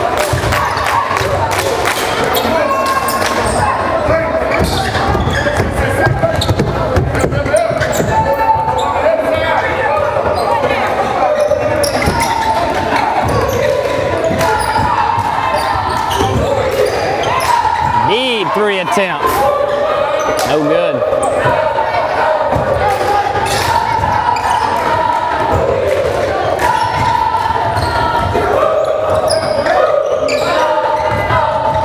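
A basketball being dribbled and bounced on a hardwood gym floor during play, with many voices from players and spectators echoing in the large gym.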